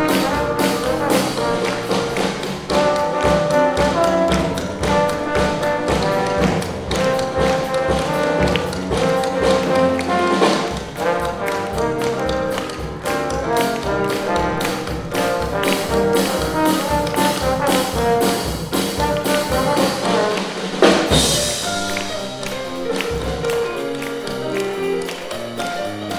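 Live jazz quartet: rhythmic hand clapping played as percussion into a microphone, with trombone, Steinway grand piano and drum kit. One loud crash sounds about five seconds before the end.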